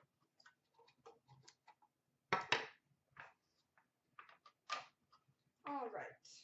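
Trading cards and a clear plastic card box being handled: scattered light clicks and taps, with a few brief louder swishes of cards sliding, the loudest about two and a half seconds in.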